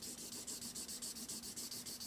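Gray felt-tip marker scrubbing back and forth on sketchbook paper, filling in a base coat in rapid, even strokes; the marker is a little dry, giving a faint scratchy rub.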